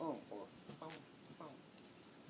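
A person's voice, faint short syllables about every half second, over a faint steady outdoor background.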